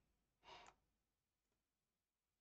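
Near silence, with one faint short breath by the narrator about half a second in.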